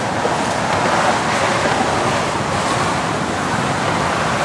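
Steady road traffic noise from cars crossing the bridge: an even wash of noise with no distinct engine, horn or other single event standing out.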